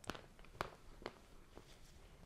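Faint chewing of a bite of frozen ice cream candy bar filled with crushed mint chocolate candy: a few soft clicks and crunches about half a second apart.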